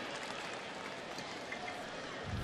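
Steady crowd noise from the ballpark stands.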